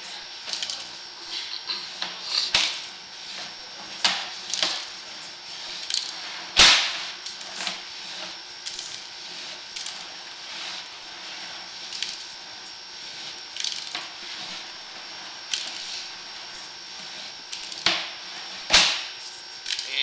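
Irregular sharp knocks and cracks, a second or several seconds apart, over a faint steady high whine: a sewer inspection camera's push rod being fed down the pipe as the camera advances.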